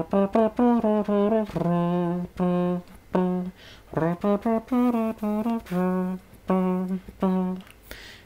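Beatbox trumpet: a buzzy, brass-like tone made with the mouth closed and the air pushed out one side of the mouth, playing a melody of quick notes and several longer held ones that step up and down in pitch.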